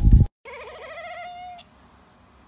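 A brief loud low rumble cuts off at the very start, then a long-haired white cat gives one quavering, bleat-like call about a second long, its pitch wobbling and slowly rising.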